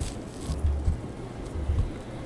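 Wind buffeting the microphone: low rumbling gusts about half a second in and again near the end, with faint rustling.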